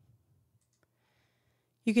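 Near silence with a single faint computer mouse click about a second in; a voice starts speaking near the end.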